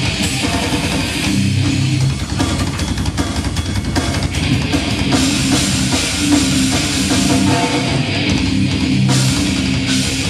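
Heavy metal band playing live: distorted electric guitars and bass over a drum kit, in a steady, dense wall of sound with rapid drum strokes.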